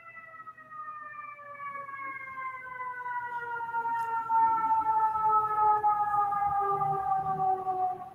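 A siren sounding one long, steady tone that slowly falls in pitch, growing louder through the second half.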